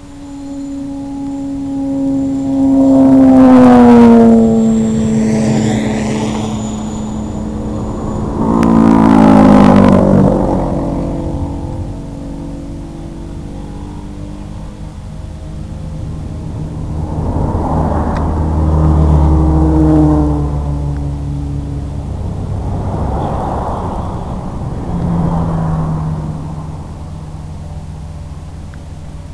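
The electric motors and propellers of an FPV multirotor drone whine, their pitch sliding up and down as the throttle changes. It is loudest twice in the first ten seconds, each time with a falling pitch, then swells more mildly a few more times.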